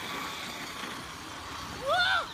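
Traxxas Slash 4WD radio-controlled truck driving through snow: a steady whine of its electric motor and drivetrain. Near the end a voice exclaims.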